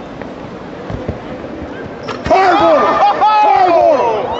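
A basketball thumps softly a couple of times. About two seconds in there is a sharp knock, and men break into loud, excited shouting and whooping that carries on.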